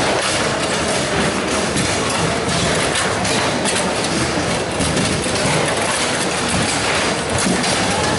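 Foosball being played: a constant clatter of quick clicks and knocks as the ball strikes the players' figures and the table walls and the steel rods jolt and rattle, over a dense background din of other play in the hall.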